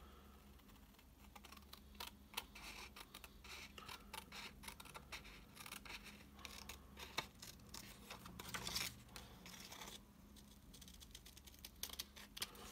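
Paper snips cutting through a sheet of patterned card-making paper along a curve: a run of faint, irregular snips and scrapes that thin out about ten seconds in.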